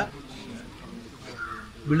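A crow cawing faintly once, about one and a half seconds in, over a low background murmur, before a man's speech resumes near the end.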